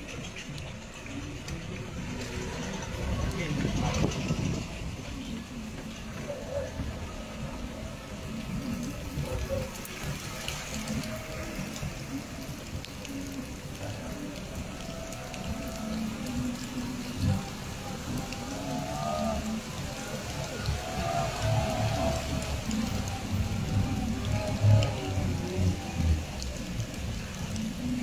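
Heard from inside a car driving slowly through floodwater in the rain: a steady low rumble of the car and the water, with rain. Music with a singing voice plays in the cabin, the singing clearest in the second half.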